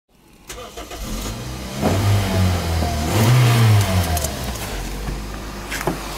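A Toyota Probox van's 1.5-litre four-cylinder petrol engine starts and is revved twice, about two and three seconds in, the second time higher. It then drops back to a steady idle.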